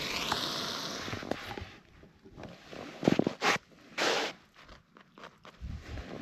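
Burgers sizzling in a frying pan over a hissing MSR WindPro II gas stove, fading out about two seconds in. Then a few short scrapes and rustles of handling.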